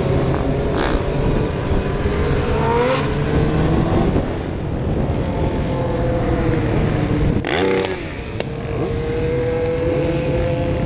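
Sport bike engine running under way as heard from the rider's seat, with wind rush; its pitch rises about three seconds in and drops again a second later. Near the end a brief loud rush with a falling pitch passes over it.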